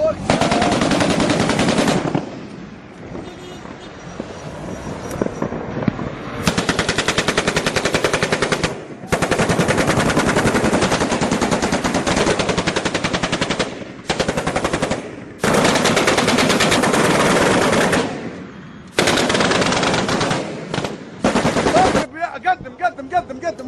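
Truck-mounted heavy machine guns firing long bursts of rapid automatic fire, each burst running a few seconds with brief pauses between. The fire is quieter for a few seconds just after the start, then resumes in nearly continuous bursts.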